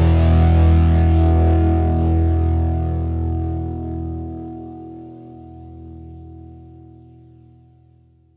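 The song's last chord, on distorted electric guitar, held and ringing out, fading slowly to silence as the track ends.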